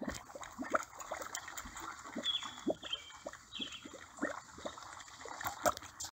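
Faint bubbling mud: a steady run of small, irregular wet pops and plops, with a few faint high chirps in the middle.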